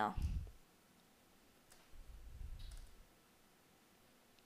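A few faint computer mouse clicks over a low, dull rumble, made while folders are clicked open in a file dialog.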